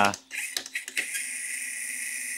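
Brushless motor and geared drivetrain of an RC4WD Miller Motorsports Rock Racer running on the bench with the wheels spinning freely, a steady, fairly quiet whine. A few light clicks come in the first second.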